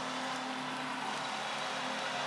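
Ice hockey arena crowd cheering a goal, a steady wash of noise.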